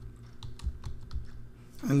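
Keystrokes on a computer keyboard as a word is typed: a run of short, quick clicks at an uneven pace.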